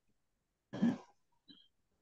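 A person clears their throat once, a short rough burst about a second in, heard over a video-call connection.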